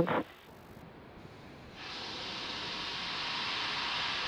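Faint steady hiss that steps up louder about two seconds in and holds evenly.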